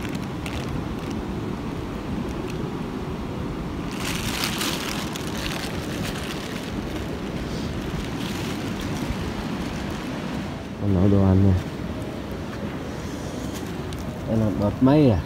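Steady outdoor rushing noise, like wind or rain, with a brighter hiss for a couple of seconds near the start and a short voiced sound about eleven seconds in.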